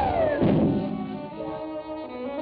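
Orchestral cartoon score: a falling glide ends in a low thud about half a second in, followed by held orchestral notes.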